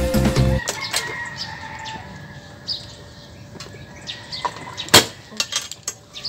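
Background music cutting off just after the start, followed by light handling noises from a motorcycle helmet and cloth: small plastic clicks and rustles, with one sharp knock about five seconds in. Birds call faintly in the background.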